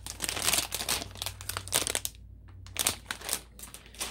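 Plastic toy-packaging bag crinkling as it is handled, in bursts through the first two seconds and again about three seconds in after a short pause.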